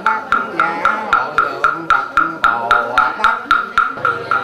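Buddhist wooden fish (mõ) struck in an even rhythm, about four knocks a second, each knock a hollow wooden tock with a short ringing tone, under a monk's chanting voice.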